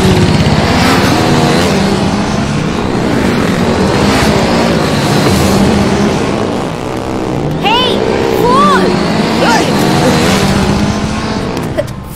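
Motorcycle engines running loud and revving up and down repeatedly as bikes ride past. About two-thirds of the way in, rising and falling voices or whoops sound over the engines.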